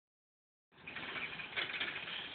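Bicycle freewheel ticking rapidly as the bike rolls, heard as a steady fine clicking.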